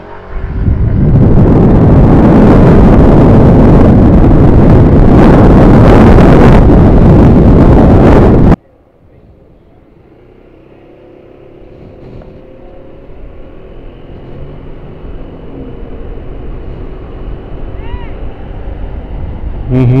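Loud wind buffeting on a helmet-mounted microphone while riding a scooter in traffic, cutting off abruptly about eight and a half seconds in. It is followed by a much quieter steady road and engine noise that slowly grows louder.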